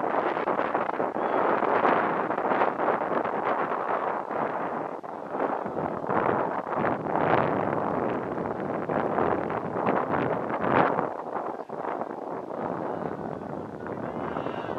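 Wind buffeting the camera microphone: a loud rushing noise that swells and eases in gusts.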